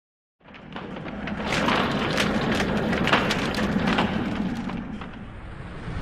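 Sound effect under an animated logo intro: a crackling noise fades in about half a second in, thick with sharp clicks through the middle, then dies down near the end.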